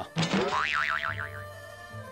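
A comedic sound effect whose pitch warbles up and down about five times in under a second, over background music with a steady low note.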